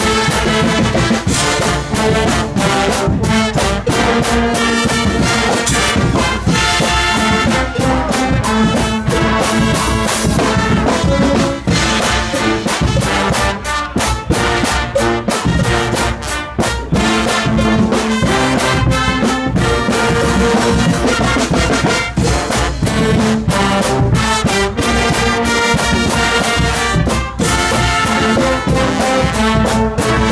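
A Guggenmusik brass band playing loud: trumpets, trombones, baritone horns and sousaphones over a drum kit with a steady beat and cymbals.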